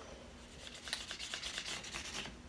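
Felt-tip marker scribbling on a paper plate, starting about half a second in, in quick short back-and-forth strokes of about six a second.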